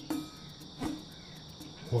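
Steady, high-pitched chorus of insects chirring in evenly repeating pulses.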